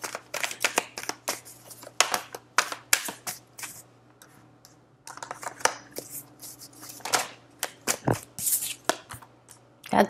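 A tarot deck being shuffled by hand in quick clicking strokes, with a short pause about four seconds in, and cards laid down onto the spread toward the end.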